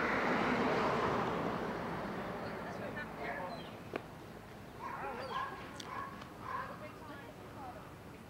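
A car passing by on the street, its noise swelling in the first second and fading away over the next few. Then faint short calls in the background, with a single click about four seconds in.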